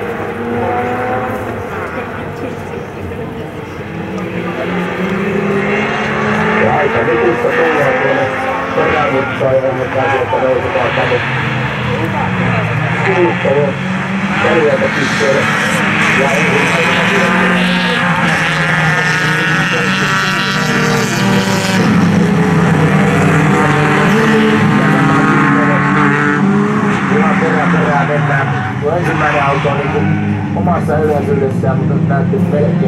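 A pack of folkrace cars racing on the circuit, several engines revving up and down and shifting over one another. The sound swells about five seconds in and stays loud as the cars pass.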